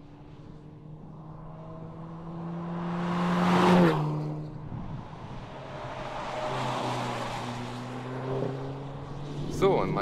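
An Audi TTS's turbocharged four-cylinder engine is driven hard on a racetrack, its note climbing and growing louder, then dropping suddenly just under four seconds in. It then climbs again, more quietly, as the car pulls away.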